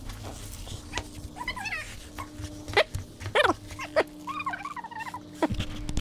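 A dog whining in several short, wavering cries, over a steady low hum, with a few sharp clicks or knocks.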